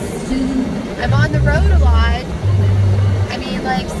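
Music with a deep bass line playing over the car stereo, with a voice over it.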